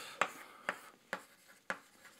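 Chalk writing on a blackboard: four short, sharp taps of the chalk about half a second apart, with faint scratching between them as the strokes are drawn.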